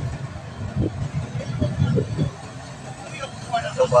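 Engine and road noise of a moving vehicle, heard from inside the cab as a steady low rumble with uneven pulses. A man's voice comes in near the end.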